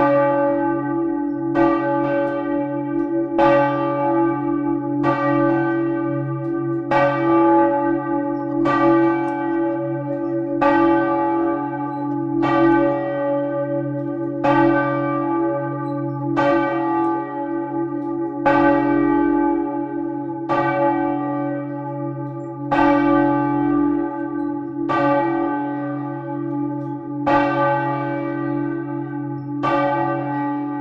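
Large bronze church bells swung by hand with ropes, struck in a steady rhythm of about one stroke every two seconds, each stroke ringing on over a continuous deep hum from the bells. Heard close up inside the bell chamber.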